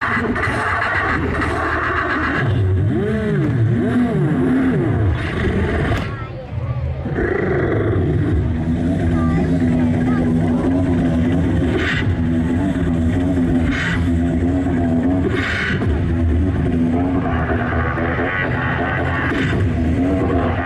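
A beatboxer performing into a handheld microphone over a stage PA: swooping, sliding vocal pitches for the first few seconds, a brief break about six seconds in, then a held hummed bass tone with sharp vocal percussion hits over it.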